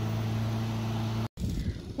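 Lawn mower engine running with a steady, low, even drone. It cuts off abruptly a little past halfway, leaving a low, uneven rumble.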